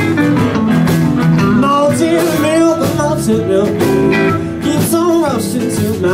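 Live blues band playing an instrumental stretch: electric guitars, bass, drums and keyboard, with a harmonica played into the microphone. The high lead lines bend up and down in pitch over a steady, dense backing.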